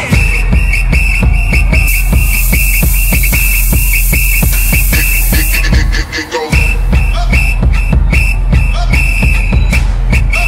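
Loud electronic dance music played through a festival sound system: a heavy kick-drum beat under a repeating high, whistle-like lead. There is a steady hiss from about two seconds in to past the middle, and the bass drops out for a moment about six seconds in.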